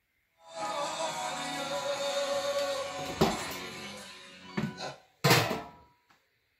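Portable radio playing music from a broadcast station, with a knock about three seconds in as it goes into a galvanized steel can, after which the music grows fainter. A short loud metal clank near the end as the lid goes on, then the radio goes silent: the can is blocking the signal, a sign of roughly 50 dB of shielding.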